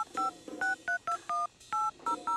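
Mobile phone keypad beeping as its keys are pressed: about seven short two-tone beeps in quick, uneven succession.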